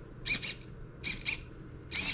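Hobby micro servos whirring in three short bursts as a joystick drives a popsicle-stick robot arm, each burst a high buzzing whine, the last with a gliding pitch.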